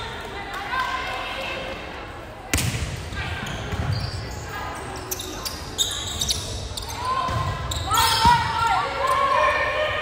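Volleyball rally in a gym: a few sharp smacks of hands and arms on the ball, the clearest about two and a half seconds in, with players and spectators calling out, busier near the end.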